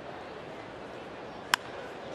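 A single sharp crack of a wooden bat squarely hitting a pitched baseball, about one and a half seconds in, over the steady murmur of a ballpark crowd. It is solid contact that sends the ball out for a home run.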